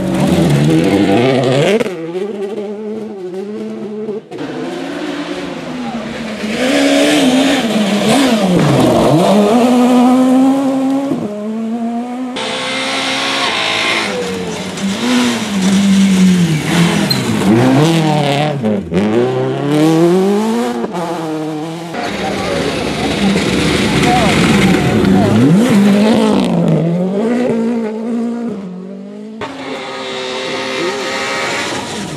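A series of rally cars, among them a Citroën DS3 R5, a Citroën C2 and a Škoda Fabia, passing at speed one after another on a gravel stage. Their engines rev hard, with pitch climbing and dropping sharply through gear changes and throttle lifts, over the hiss of loose gravel and dirt thrown up by the tyres. The sound breaks off abruptly several times as one car gives way to the next.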